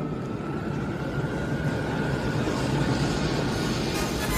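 Steady, dense low rumbling roar from the trailer's sound effects, with a faint held tone above it.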